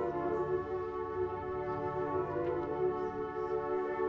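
Flute choir playing slow, sustained chords, several flutes from high to low holding steady notes together.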